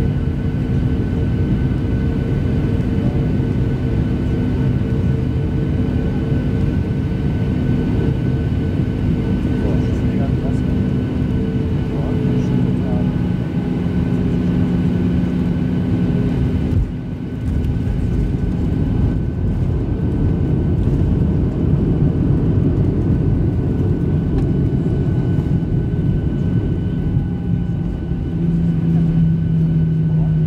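Inside the cabin, the engines and airflow of a Boeing 737-600 make a loud, steady rush with whining tones as it lands. There is a short dip a little past halfway, after which the noise rises again while the aircraft rolls along the runway.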